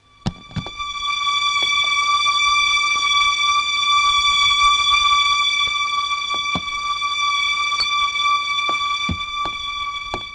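A steady, high-pitched electronic tone that swells in over the first second and holds at one pitch, with a few light knocks and clicks scattered through it.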